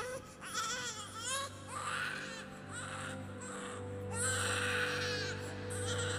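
A baby crying in a series of short, wavering wails, followed by a longer wail about four seconds in.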